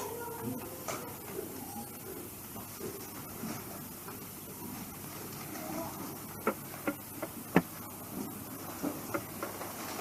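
Faint background murmur, then a handful of sharp clicks and knocks from about six and a half seconds in, the loudest around seven and a half seconds: microphone handling noise as the speaker's hands move at her hair and neck.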